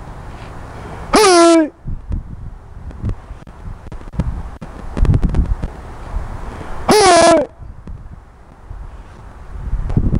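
A man's loud, drawn-out shout, falling in pitch and then held, given twice about six seconds apart as he counts and shouts through a round house kicking drill. Low wind rumble on the microphone fills the gaps between the shouts.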